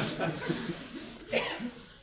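A single short cough a little over a second in, over faint chuckling in the room.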